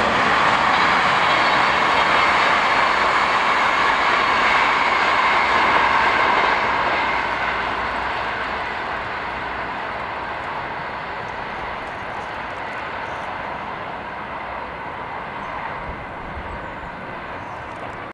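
Benelux passenger train hauled by a Bombardier TRAXX electric locomotive (NMBS Class 28) running past on the track and going away. Its rolling noise is loud for the first six seconds or so, then fades steadily.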